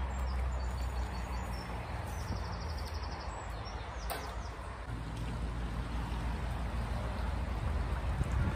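Narrowboat's diesel engine running at low revs as the boat passes along the canal, a steady low hum. A single brief click about four seconds in.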